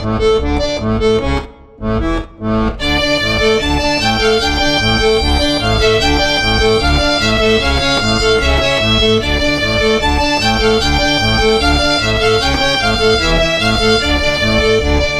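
Instrumental polka led by accordion, with fiddle, over an even two-step bass beat. It opens with a few short chords broken by brief stops, then settles into the running tune about three seconds in.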